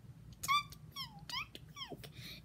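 Four short, high-pitched whimpers from a dog, each sliding down in pitch, fainter than the talking around them.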